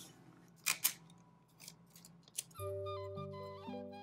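Two short rasps about a second in as clear tape is pulled from a desk dispenser and torn off on its cutter. From about halfway, background music with long held notes that step in pitch.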